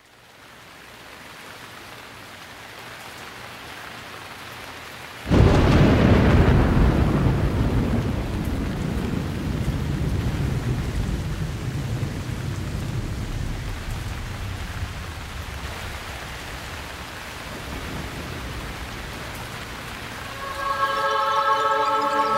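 Rain sound effect fading in as the opening of a hard-rock track. About five seconds in, a loud thunderclap rumbles away over several seconds while the rain continues. Near the end, sustained musical chords come in over the rain.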